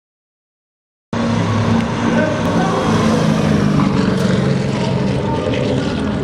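Silence, then about a second in a Porsche 944 drift car's engine cuts in suddenly and runs at fairly steady revs as the car slides.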